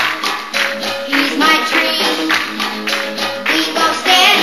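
A late-1950s teen pop song played by a band with a steady beat, about two beats a second, and a female lead singer.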